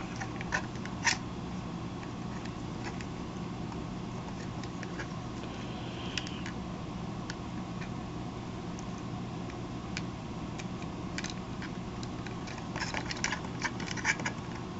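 A few soft clicks and taps of hard plastic toy parts as the wings and legs of a Galoob Action Fleet droid starfighter are moved by hand, over a steady low room hum.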